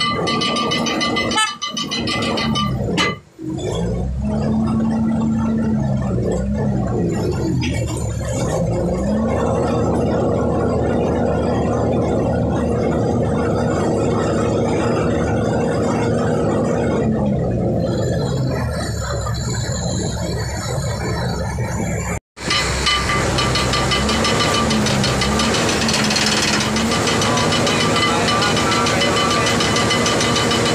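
Ship's cargo crane engine running under load, revving up, holding, and dropping back several times as the crane hoists and swings bundles of tyres. The sound cuts out briefly twice, about three seconds in and again past twenty seconds.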